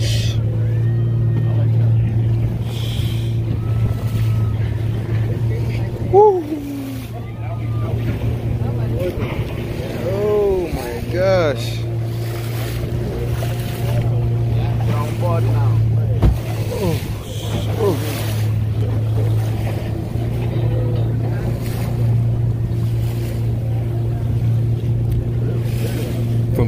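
Outboard motor driving a wooden canoe across choppy sea: a steady low drone that holds its pitch, with water splashing along the hull.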